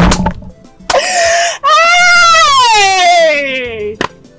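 A woman's mocking laughter: a sharp burst at the start, a short breathy laugh about a second in, then one long drawn-out cry of laughter that slowly falls in pitch.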